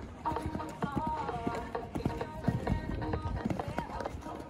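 A show-jumping horse cantering on a sand arena, its hoofbeats coming as repeated dull thuds, with music playing over them.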